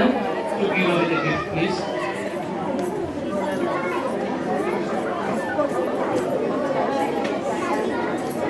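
Audience chatter: many people talking at once, with no single voice standing out.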